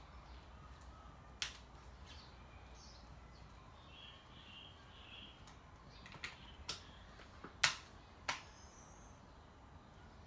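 A handful of sharp, separate clicks and knocks as the loop handle and its clamp on a Stihl line trimmer's shaft are handled and worked loose, the loudest about three-quarters of the way through.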